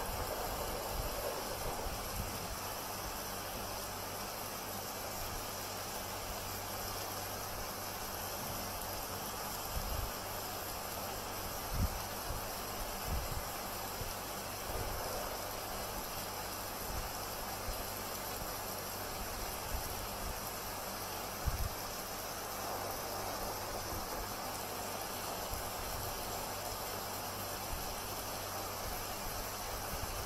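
Steady background hiss with a few soft low thumps, about ten and twelve seconds in and again near twenty-one seconds, as hands handle and turn a small paper drawing tile on a table.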